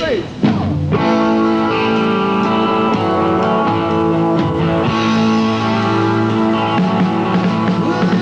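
Live rock band launching into a song's instrumental intro with electric guitars playing chords, coming in about half a second in right after a spoken count-in and then holding steady and loud.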